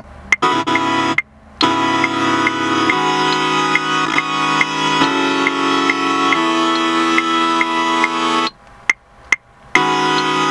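Synth chords played on the iMaschine 2 app's on-screen keyboard in chord mode: held chords that change every second or two, over a light tick on each beat. The sound stops briefly twice, just after a second in and again near the end.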